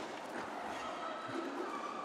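Faint arena background of quad roller skates rolling and scuffing on the sport-court floor as the pack jostles, a steady low hiss of wheels and strides.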